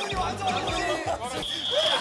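Voices shouting and laughing over music, with thuds of feet and plastic stools on a wooden floor as players scramble for seats in musical chairs. A brief high steady tone sounds near the end.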